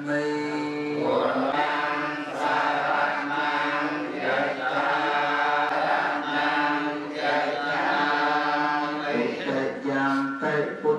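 Theravada Buddhist monks chanting, the male voices holding long sustained notes on a steady pitch, the lead voice carried through a microphone.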